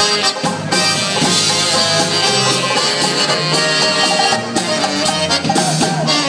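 Live polka band playing an instrumental passage on accordion, saxophone, banjo, bass guitar and drums.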